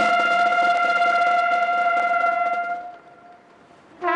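Slow solo brass music: one long note held for nearly three seconds, then fading away before the next phrase.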